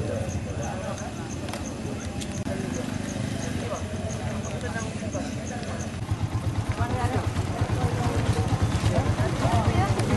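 Indistinct chatter from a crowd over a steady engine running in the background. The engine grows louder about halfway through.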